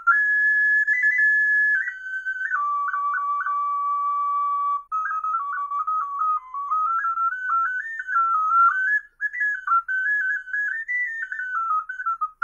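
A small pendant ocarina playing a melody in clear, whistle-like notes. Some notes are held early on, quick cuts flick up briefly off some notes (crisp ornamentation), and the playing turns into a faster run of notes in the second half.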